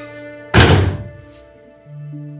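A single loud, heavy thud about half a second in, dying away over about half a second, over sustained soft background music that gives way to a new ambient chord near the end.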